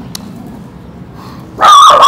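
A dog gives one loud, high-pitched yelp with a wavering pitch near the end.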